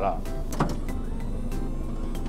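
Electric door mirrors of a 4-ton truck unfolding: a steady motor whine over the low hum of the idling diesel engine.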